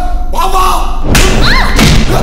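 Film soundtrack: voices in the first second, then from about a second in loud thuds and crashing impact effects with short rising-and-falling cries, the loudest hit near the end.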